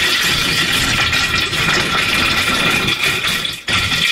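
Loud, harsh, steady noise with a few faint steady tones running through it, dipping briefly near the end: a heavily distorted audio effect.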